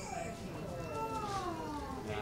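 A sheep bleating: one drawn-out call that falls in pitch, with people talking around it.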